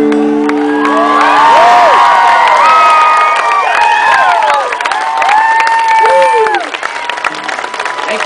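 A strummed acoustic guitar chord rings out for the first second or so as the song ends, then a young audience cheers, whoops in high voices and claps.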